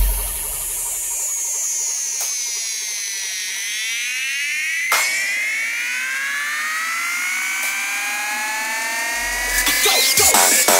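Breakdown in a newstyle hard-dance mix: the kick drum and bass drop out, leaving a whining synth that glides down for about three seconds and then rises steadily, with a single hit about five seconds in. The bass and beat come back near the end.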